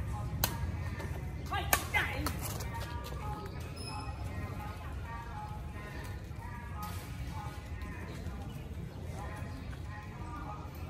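Badminton rackets striking a shuttlecock during a rally: a sharp hit about half a second in, then a quick run of hits around two seconds in. A steady low hum runs underneath.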